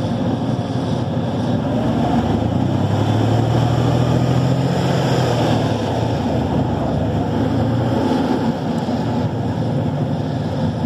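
Heavy armoured-vehicle diesel engine running steadily, with a deeper engine note swelling for several seconds from about two and a half seconds in and easing off near eight seconds.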